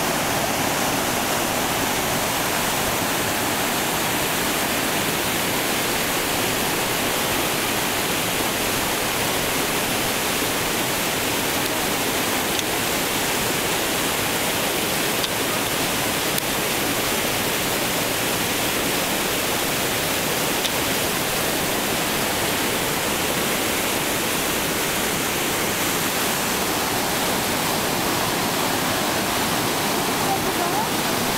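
Rocky mountain stream rushing white over mossy boulders in small cascades: a steady, loud rush of water that does not let up.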